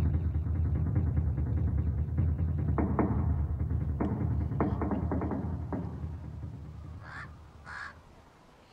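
Film soundtrack music with a heavy low rumble and scattered percussive hits, fading away over the last two seconds; near the end there are two short harsh calls.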